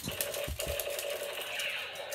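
Toy gun firing a rapid automatic burst: a fast, steady rattle lasting about two seconds, with a couple of low bumps about half a second in.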